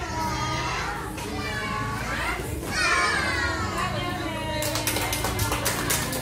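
Young children's high voices calling out in a sing-song way. About four and a half seconds in, a group starts clapping hands in an even rhythm.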